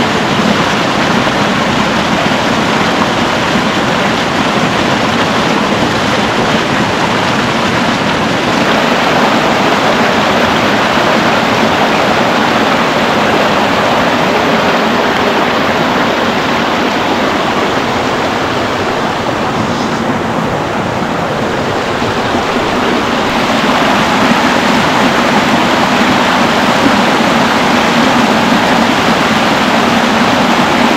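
A small rocky mountain stream rushing and splashing over stones close by, as a steady loud rush that eases slightly for a few seconds past the middle.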